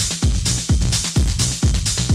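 Deep/tech house music from a DJ mix: a steady four-on-the-floor kick drum about twice a second, with bright hi-hats between the beats.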